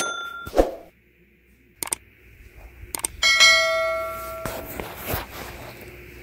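A subscribe-button sound effect: a couple of clicks, then a bright bell ding about three seconds in that rings for about a second and cuts off abruptly.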